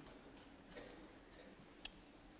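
Near silence: room tone with a few faint clicks and one sharper click near the end.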